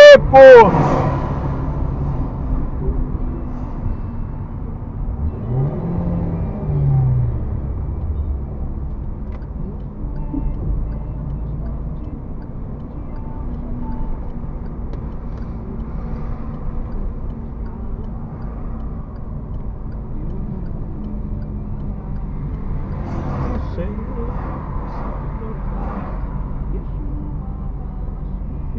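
In-cabin car engine and road noise while driving on a highway, a steady low rumble. About six seconds in, the engine note rises and then falls once as the car accelerates.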